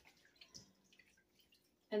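Faint splashing and dripping of water as sprigs of spearmint are rinsed by hand in a stainless steel bowl, a few small drips and splashes scattered through.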